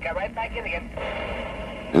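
A thin, tinny voice over a two-way radio for about half a second, then about a second of steady radio noise before the narration resumes.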